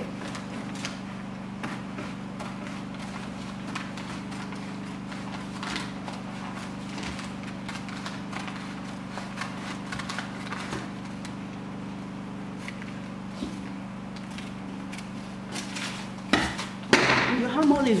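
Scissors cutting brown paper: a scattered run of faint snips and paper rustles over a steady low hum.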